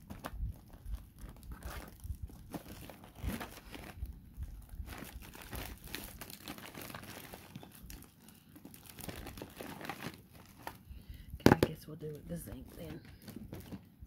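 Rummaging for ink pads among craft supplies: irregular rustling and crinkling with small clicks and knocks, the loudest a single sharp knock near the end.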